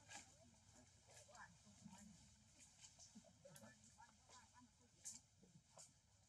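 Near silence with faint voices in the background and a few soft clicks.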